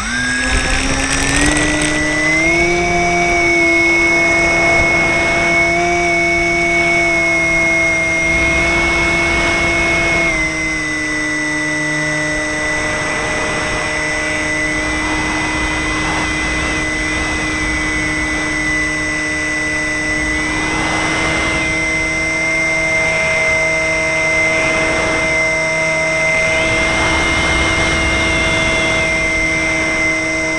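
Electric motor and propeller of a Multiplex FunCub RC model plane, heard from a camera on board. The motor spins up over the first couple of seconds into a steady high whine for the takeoff and climb. About ten seconds in, the pitch drops slightly as the throttle is eased back.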